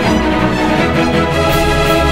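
Background music track with sustained melodic tones and a steady beat.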